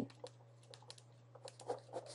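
Faint, scattered light taps and clicks of a stylus on a pen tablet while writing, over a steady low electrical hum.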